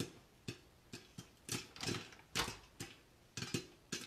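Popcorn popping in a lidded saucepan on the stove: scattered sharp pops at irregular intervals, about eight in four seconds.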